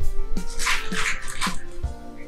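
Plastic snack wrapper crinkling in a few short rustles as it is handled, over soft background music.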